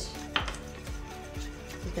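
A spoon clinks and scrapes against a stainless steel mixing bowl as a marinade is stirred, with one sharp clink a third of a second in. Background music with a steady beat plays underneath.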